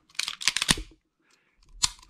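Clicks and knocks of a 1911 pistol being handled: a quick cluster of sharp clicks in the first second, then a single click near the end.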